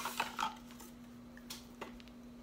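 A plastic cleanser tube being slid out of a thin cardboard box, giving a few light taps and rustles of cardboard and plastic, the loudest in the first half-second and two more about a second and a half in.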